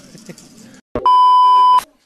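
A single loud, steady electronic bleep tone lasting just under a second, starting about a second in with a click and cutting off sharply, after faint talk and laughter.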